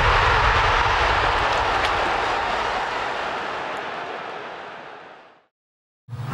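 Intro sound effect: a long, even rush of noise with no tune or beat, fading away steadily over about five seconds and ending in silence shortly before the interview starts.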